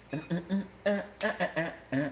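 A person's voice humming or vocalising a tune in short, separate notes, several a second.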